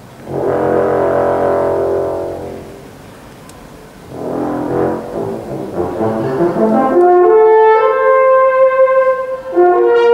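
Orchestra playing two sustained chords that swell and fade, then about seven seconds in a solo euphonium enters with a line of clear, held notes stepping upward.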